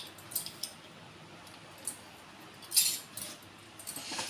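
Bangles on a wrist clinking faintly while hands work a rolled puri with its filling on a wooden board, with a few scattered light clicks and a brief louder rattle near the end.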